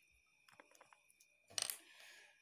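Faint handling noise: a few small clicks, then a short rustle about one and a half seconds in as a hand reaches for the recording phone, over a faint steady high whine.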